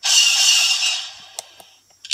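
A blaster sound effect played from the board's SD-card sound module through a small loose speaker: a sudden hissing burst that fades out over about a second and a half.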